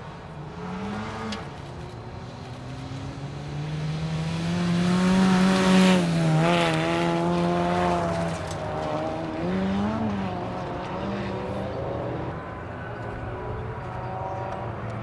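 Honda Fit rally car's engine revving hard as it passes close and pulls away, its pitch rising and falling. It is loudest about six seconds in, then fades, with another short rev near ten seconds.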